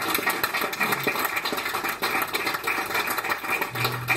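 A small audience clapping after a song ends: a dense, irregular patter of hand claps with no music under it.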